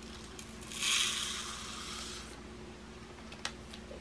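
Diamond-painting drills, tiny plastic beads, pouring from a plastic bag into a plastic jar: a soft rush of many small pieces that starts just under a second in and lasts about a second and a half. A faint click follows near the end.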